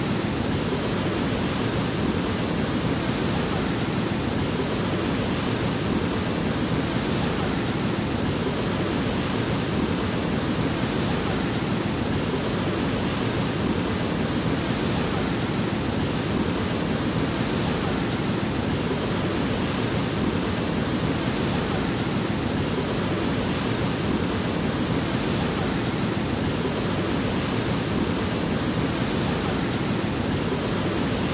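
Whitewater of a fast, high-running river rushing over rocks and rapids: a dense, steady rushing of water, heaviest in the low range, with no let-up.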